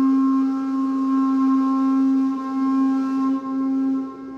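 A hand-held horn blown in one long, steady note at a single low pitch, with a few brief dips in level.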